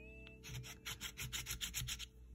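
Metal scratching tool scraping the coating off a scratch-off lottery ticket, in quick faint strokes about seven a second, starting about half a second in.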